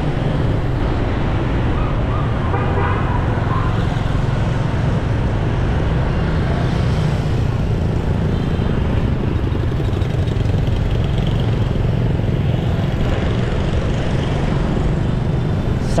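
Steady low rumble of a moving motorbike ridden through town traffic: its engine and road noise, with other scooters passing close by.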